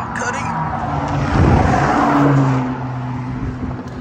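Pontiac G8's engine and exhaust, heard from behind the car: it idles, then is revved once about a second in, held briefly, and drops back to a steady idle near three seconds.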